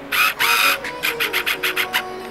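Cardboard jewellery cards with rings on them, handled and rubbed close to the microphone: two longer rustles, then a quick run of short scratchy scrapes, about seven a second.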